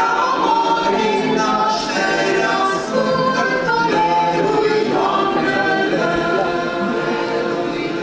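Mixed choir of women's and men's voices singing a Christmas carol a cappella, several parts holding sustained chords that move together.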